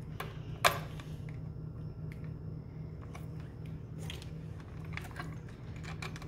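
Scattered light clicks and taps of hand tools and a plastic electrical receptacle being handled at an outlet box, one sharper click about a second in, over a steady low hum.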